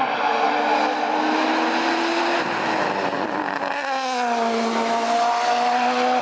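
Race car engine running hard up a hill-climb road, its note climbing steadily for about two and a half seconds, then dropping away and climbing again from a lower pitch from about four seconds in.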